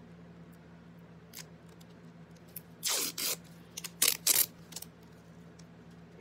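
Black gaffer's tape being handled: a half-second noisy rip of tape about three seconds in, then a quick cluster of short, sharp, louder sounds about a second later as a strip is separated.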